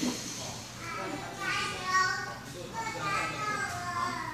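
People's voices talking and calling out; no other clear sound stands out.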